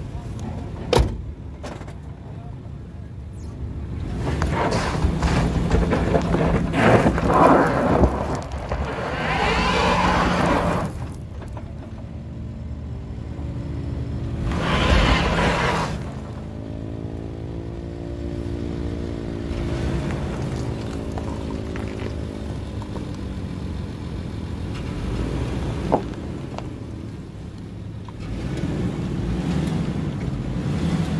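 Nissan Pathfinder's V6 engine working at low speed as the SUV crawls over rocks, its note rising and falling for a few seconds midway, with surges of wind rushing over the microphone. A sharp knock sounds about a second in and again near the end.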